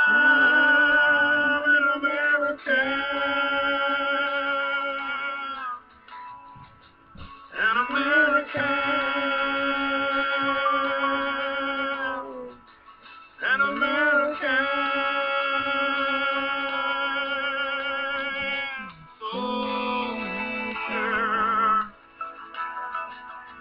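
A girl's voice singing long held notes with a wide, wavering vibrato, in four drawn-out phrases with short breaks between them.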